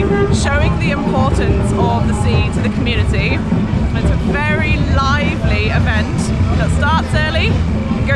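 A group of voices singing together with drums beating underneath: the live sound of a festival street procession.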